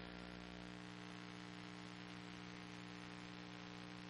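Faint, steady electrical mains hum on the audio line: several even tones held unchanged, with a light hiss over them.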